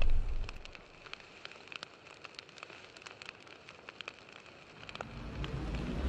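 Fire sound effect for a title card: a boom fades away in the first second, then faint crackling with scattered sharp pops, and a low rumble builds near the end.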